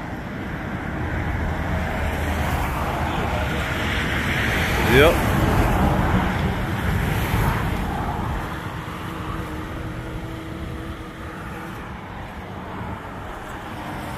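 Road traffic: a passing vehicle's engine and tyre noise swells over several seconds and then fades, with a short rising squeal about five seconds in.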